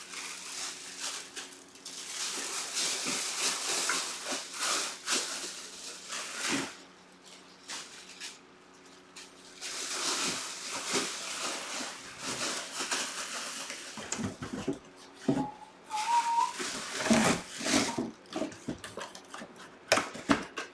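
Plastic wrapping rustling and crinkling as it is handled, in stretches with short pauses between them. A short rising tone sounds about sixteen seconds in.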